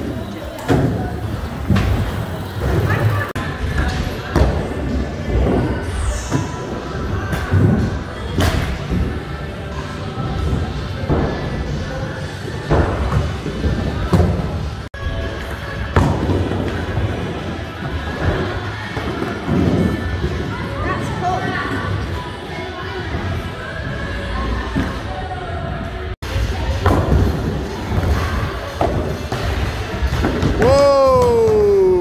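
Skateboard wheels rolling on wooden ramps, with repeated thuds and slams of boards and riders on the wood, against background voices and music in the skatepark. The sound drops out for an instant twice.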